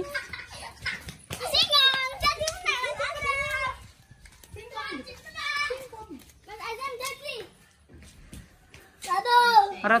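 Children calling out to each other at play in short, high-pitched phrases, with a brief lull shortly before the end.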